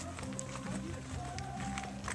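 Music playing in the background with steady low notes and a few held higher notes, under scattered short knocks from footsteps and handling of the camera.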